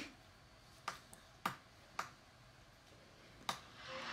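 Four sharp, short clicks: three about half a second apart, then one more after a pause of about a second and a half.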